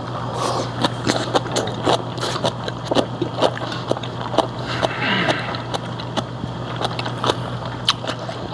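Chewing a mouthful of food up close, with many short wet clicks and smacks scattered throughout, over a steady low hum.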